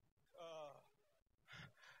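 Near silence, broken about half a second in by one brief, faint vocal sound from a man's voice, falling in pitch.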